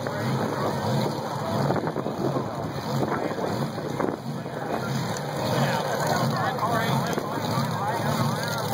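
Supercharged drag cars idling at the starting line, a steady low pulsing rumble, mixed with voices talking close by and wind on the microphone.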